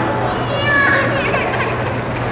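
Excited, high-pitched voices, one rising into a squeal-like exclamation about half a second in, over the background noise of a crowd.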